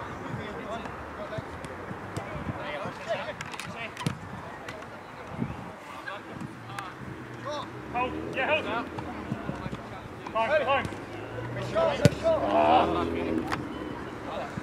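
Players shouting and calling to each other during a football game, with thuds of the ball being kicked; the loudest is a sharp kick near the end.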